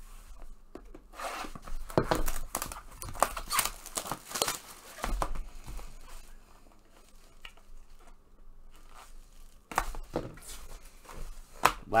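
Plastic shrink-wrap being torn off a sealed cardboard box of trading cards and crinkled in the hands. A dense run of irregular rips and crackles comes in the first few seconds, then thinner rustling, with a few more crackles near the end.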